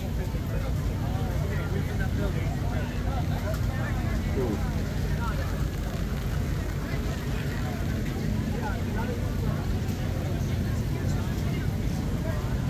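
Crowd chatter, many voices overlapping with no single speaker standing out, over a steady low machine-like rumble.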